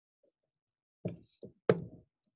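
Three keystrokes on a computer keyboard, starting about a second in, roughly a third of a second apart. The last one is the sharpest.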